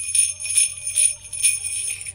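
Small handheld jingle bells from a children's percussion set, shaken in a steady rhythm of about two shakes a second, the metal bells ringing.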